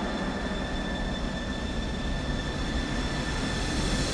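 Piston aircraft engines droning in flight: a steady, even rumble with a faint high steady tone above it.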